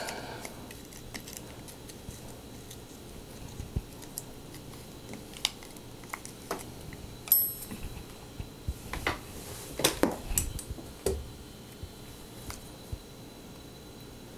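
Scattered small clicks and taps of metal tools and parts against a SRAM Force 22 shifter's internal mechanism as its pivot pin is worked back out by hand, with a cluster of clicks around ten seconds in.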